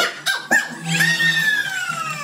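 Two sharp claps, then excited high-pitched shrieks from party guests that slide steadily downward in pitch.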